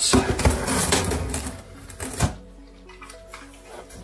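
Knife slitting packing tape along the lid of a large cardboard box: a scratchy, rasping cut for about two seconds that ends in a sharp click, after which only faint background music is heard.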